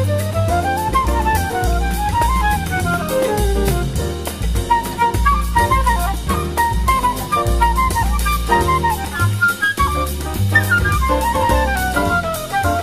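Big band jazz playing an instrumental break in a samba, with no singing. A winding melody line climbs and falls over a bass line and a drum kit keeping time on cymbals.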